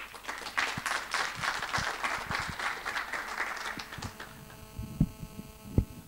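Audience applauding for about four seconds, then dying away to a steady electrical hum. Near the end come two heavy thumps from the microphone being handled on its stand.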